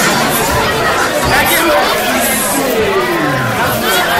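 Several people talking over one another amid crowd noise, a steady busy murmur of voices.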